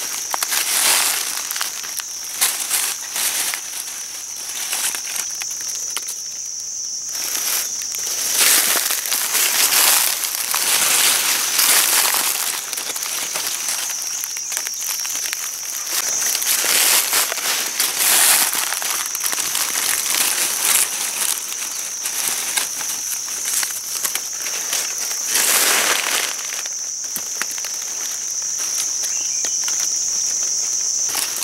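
Dry leaf litter crunching and rustling in irregular bursts as someone moves through it, over a continuous high-pitched insect buzz.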